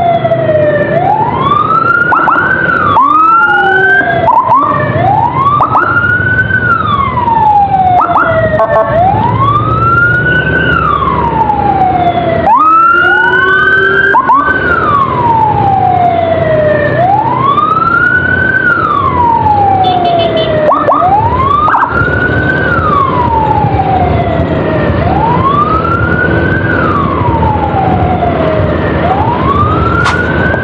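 Electronic emergency sirens of an escorting motorcycle and an ambulance: one wails in long rise-and-fall sweeps about every three seconds, while a second cuts in now and then with quicker sweeps. Engine and traffic noise run underneath.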